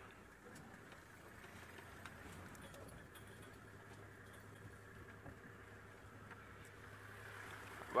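Faint, steady low hum of an open safari vehicle's engine running at low revs while it pulls aside for another vehicle.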